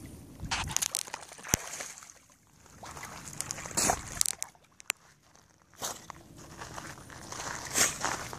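Water sloshing and splashing in uneven bursts as a dog swims and paddles in shallow water, with a few sharp clicks and two quieter lulls midway.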